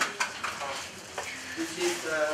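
Plastic wrapping on a large package crinkling and rustling as it is handled, with irregular crackles and small clicks.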